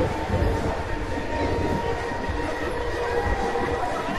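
Ferris wheel running: a steady held whine over a low, uneven rumble.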